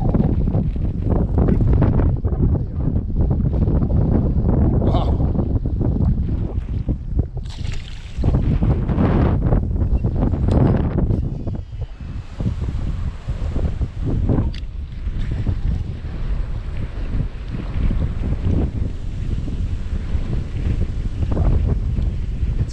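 Strong wind buffeting the microphone: a loud, continuous low rumble that swells and eases with the gusts, dropping briefly about halfway through.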